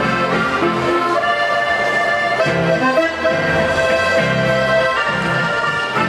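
Live Oberkrainer polka band playing an instrumental passage: accordion carrying the melody over strummed acoustic guitar and upright double bass notes.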